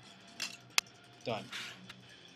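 A single sharp plastic click a little under a second in: the top cover of a Seagate GoFlex Desk enclosure snapping free of its clips as it is pried with a plastic spudger.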